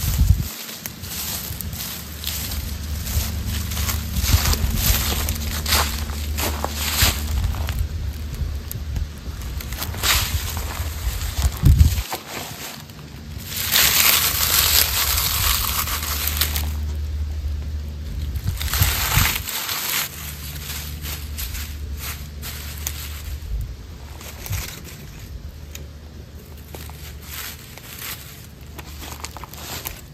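Dry leaves being crushed and crumpled by hand, a dense crackling rustle that is loudest in two long stretches in the middle. At first there are steps crunching through fallen leaves.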